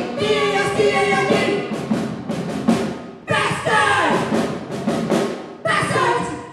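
Several women's voices singing and chanting together, loud and amplified through microphones. A little past three seconds in they come in again and slide down in pitch together in a falling wail, with another loud entry near the end.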